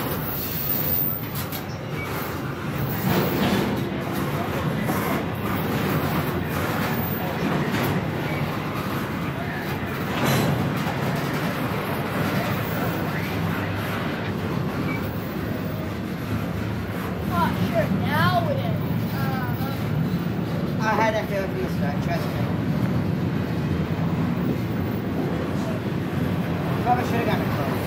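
Double-stack intermodal freight cars rolling past: a steady low rumble of steel wheels on rail, with occasional clanks from the cars.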